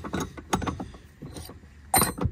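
Scattered light clicks and taps of a wrench and metal on the brass A/C line fittings as they are worked loose, with one sharper clink near the end.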